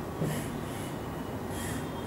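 A man's breathing in a pause between sentences: two short, soft breaths through the nose, about a third of a second in and again near the end, over faint room noise.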